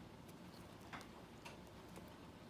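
Faint, irregular clicks and mouthing sounds of a dachshund puppy chewing and tugging at a plush toy, with a sharper click about a second in.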